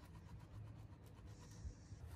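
Near silence: faint low background hum.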